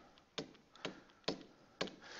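Stylus tip touching down on a tablet's touchscreen while handwriting: four faint clicks about half a second apart.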